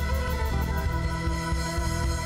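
Live rock band playing: held organ-sound chords from an electronic keyboard over bass guitar and drum kit.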